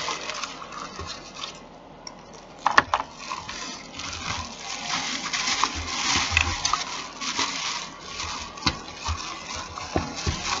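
Clear plastic packaging crinkling and rustling as it is handled and pulled open by hand, with a sharp click about three seconds in.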